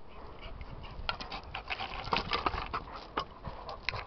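Two Šarplaninac shepherd dogs scuffling together, heard as a rough, noisy rustle broken by many sharp clicks and knocks.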